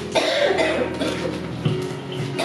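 A person coughing: a loud burst just after the start and a shorter one near the end, over soft guitar music.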